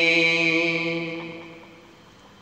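A man's voice holding the last sung note of a line of an Urdu devotional chant (ilteja), steady in pitch and fading away over about a second and a half.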